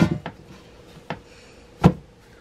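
A shaped loaf of bread dough going into a metal loaf pan on a wooden board: quiet handling, a faint click about a second in, then one sharp knock near the end.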